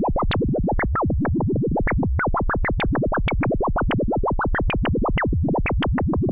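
Behringer 2600 semi-modular analog synthesizer playing a fast, unbroken stream of short sweeping blips, about seven a second, each reaching a different height.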